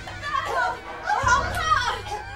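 Children's high-pitched voices calling out and chattering, over background music.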